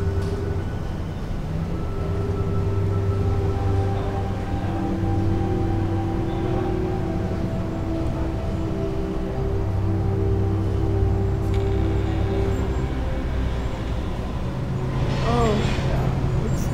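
Dark, suspenseful film score: low sustained drone tones that hold and shift to new pitches every few seconds over a low rumble. Near the end a wavering sound that bends up and down enters.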